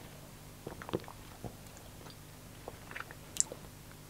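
Faint wet mouth and lip smacks, a few scattered clicks with a sharper one near the end, as a person savours a mouthful of beer.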